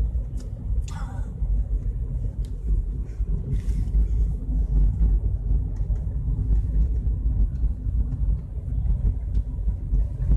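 Steady low rumble of a Seat Mii's small three-cylinder petrol engine and road noise, heard from inside the cabin while driving.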